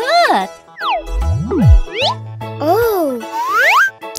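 Bouncy children's cartoon music with a run of cartoon sound effects over it: boings and sliding whistle-like swoops that rise and fall in pitch, one low sliding tone dropping about a second in, and a long rising sweep near the end.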